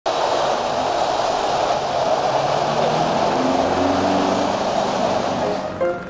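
Steady rush of city road traffic that cuts off abruptly near the end, as plucked guitar and piano notes of background music begin.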